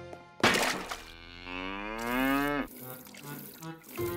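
A cartoon cow's long moo, rising slowly in pitch and cutting off suddenly a little before three seconds in. A sudden loud burst of noise comes just before it, about half a second in.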